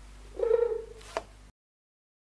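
A single short cat meow with a steady pitch, followed by a sharp click about a second in, after which the sound cuts off to silence.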